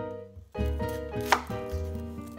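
Chef's knife chopping through an onion onto a wooden cutting board, with a sharp chop about two-thirds of the way in. Background music plays throughout.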